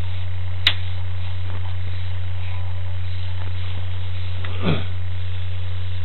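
Steady low electrical mains hum on the audio of a sewer inspection camera rig, with one sharp click under a second in and a faint brief falling squeak about three-quarters of the way through.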